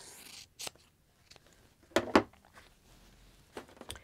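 Scissors cutting through layered cotton quilting fabric between two seams: a soft rasping snip, then a few sharp clicks, the loudest pair about two seconds in and more near the end.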